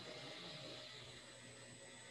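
Faint steady hiss with a low hum: the background noise of an open video-call microphone in a quiet room. A thin, high steady whine joins it about a second in.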